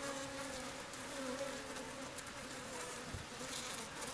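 Native Asian honeybees buzzing as a steady, low hum from a cluster of guard bees massed at the hive entrance. They are on the defensive against a hornet, shaking their abdomens together.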